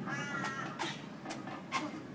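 A high, strained vocal whine of about half a second from a woman straining under a 240 kg yoke, followed by a few short sharp knocks roughly twice a second.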